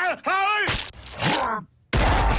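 A cartoon character's voice making two short groaning, laugh-like sounds that rise and fall in pitch, followed by about a second of rough, noisy commotion that stops just before the end.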